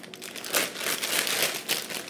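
Plastic bag of jumbo marshmallows crinkling as it is handled, a dense crackle that grows louder about half a second in.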